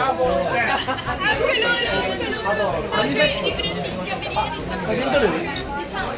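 Several people talking over one another: lively group chatter.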